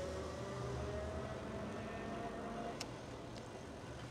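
An e-bike's electric drive motor whining under throttle, its thin tone rising slowly as the bike speeds up, over a steady background hiss. There are a couple of faint ticks near the end.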